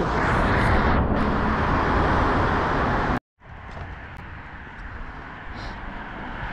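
Road traffic noise, loud at first, with a steady rush like a car passing close by. It cuts off suddenly about three seconds in, leaving a much quieter background of distant traffic.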